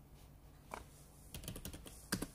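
Computer keyboard keys pressed: one keystroke about three-quarters of a second in, then a quick run of several keystrokes in the second half, as a save shortcut is typed.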